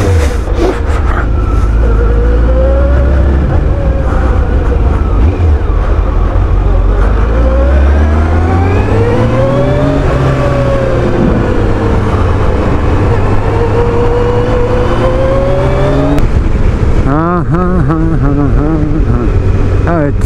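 Kawasaki ZX12R's inline-four engine running as the bike rides off at low speed, the revs climbing and dropping several times, with a rapid wavering of the engine note near the end. Heard from a chest-mounted camera on the rider.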